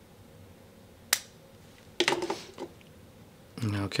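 Spring-loaded lancing device firing to prick a fingertip: a single sharp click about a second in.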